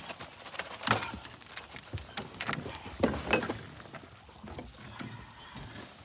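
Wire crab trap being shaken and handled to get a crab out, with irregular clanks, rattles and knocks, the loudest about a second in and around three seconds in.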